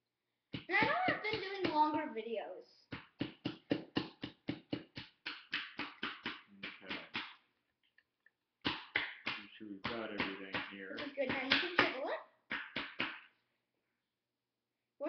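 Quick, even taps of a digging tool chipping at a plaster excavation block, about four a second, stopping briefly a little after the middle. A voice vocalises without words over the start and again near the end.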